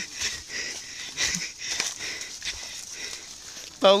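Footsteps and the rustle of leaves and brush as people walk through vegetation: irregular soft scuffs and swishes, with a short faint voice about a second in.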